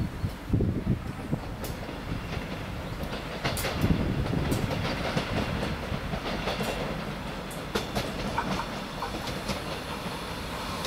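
Approaching train running on the rails, with a steady rumble and many short wheel clicks; it grows louder about three and a half seconds in.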